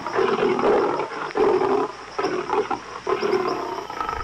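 Lion growling and roaring as a cartoon sound effect, a run of short, rough growls one after another.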